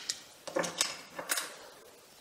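Handling of a Zoom H1 recorder's ABS-plastic battery compartment cover as it is slid off and set down: a few light plastic clicks and clatters in the first second and a half.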